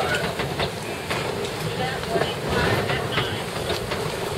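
Wind buffeting the microphone over choppy water slapping against a boat's hull, with faint voices calling now and then.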